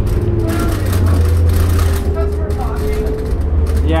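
2006 New Flyer D40LF diesel transit bus under way, heard from inside the cabin: a loud, steady low drone with a thin whine that rises slowly in pitch as the bus picks up speed.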